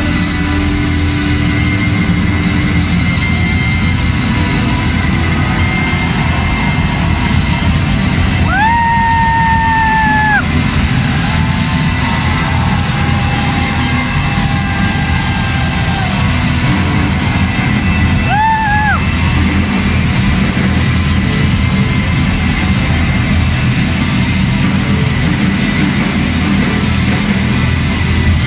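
Live rock band with a string orchestra playing loud and full: acoustic and electric guitar with violins and cello. Two long held high notes stand out above the music, about a third of the way in and again about two-thirds in.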